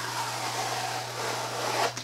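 Cut fabric being peeled off a sticky pink Cricut fabric cutting mat: a steady peeling noise that cuts off suddenly near the end as the fabric comes free.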